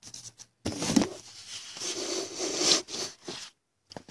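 Handling noise: rubbing and scraping with a few sharp knocks as the recording device is moved and the cardboard card boxes are handled, cutting out briefly near the end.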